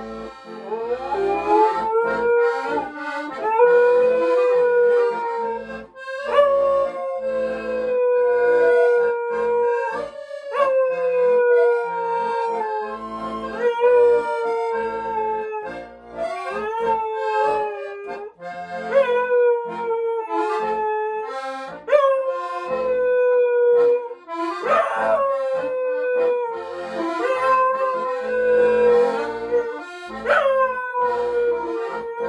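A dog howling along with a piano accordion: a string of long howls, each a few seconds long, starting with a quick upward slide and then sagging slowly in pitch, over the accordion's steady chords.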